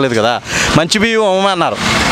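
A man speaking Telugu in short phrases, with a rushing noise between them.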